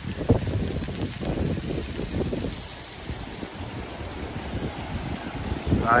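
Wind gusting on the microphone, with faint splashing from a water-play spray jet.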